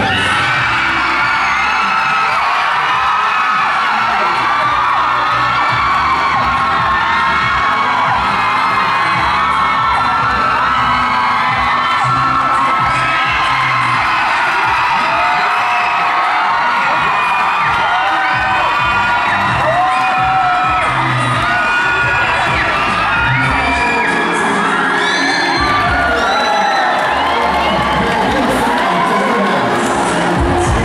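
Audience cheering and screaming, many voices shrieking over one another without pause, with clapping. The shrieks rise higher about five seconds before the end.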